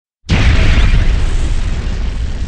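Explosion sound effect for an animated fire title card: a sudden loud boom about a quarter second in, then a deep rumble that slowly fades.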